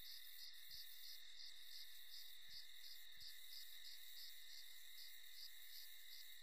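Faint insect chirping in a quick even pulse, about three a second, over a steady high hiss.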